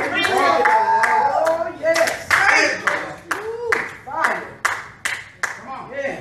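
Hand clapping in church, sharp single claps at about three a second, with voices calling out, mostly in the first two seconds.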